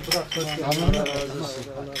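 Men's voices talking and laughing together, with a brief low thump about a second in.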